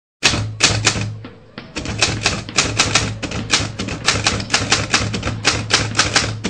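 Typewriter sound effect: a rapid run of keystroke clicks, several a second, over a steady low hum, typing out a title on screen.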